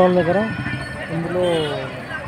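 Only speech: a man talking close to the microphone.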